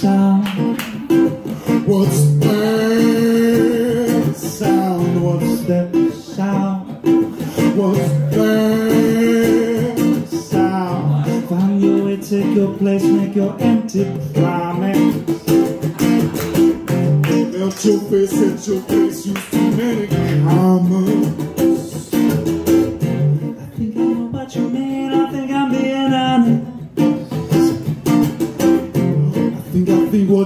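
Acoustic guitar strummed steadily under a singer's voice, which holds several long wavering notes.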